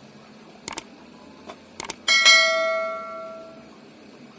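Subscribe-button animation sound effect: two pairs of quick clicks, then a notification bell chime that rings and fades over about a second and a half.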